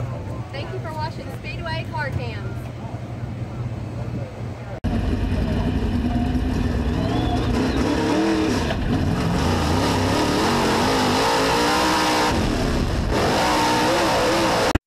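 A person's voice over background noise. About five seconds in, a sudden cut brings louder race car engine sound, revving up and down.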